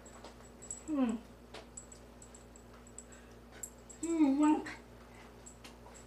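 Two short vocal sounds: a call falling in pitch about a second in, and a longer wavering call around four seconds in, which is the loudest part. Light clicks and taps sound between them.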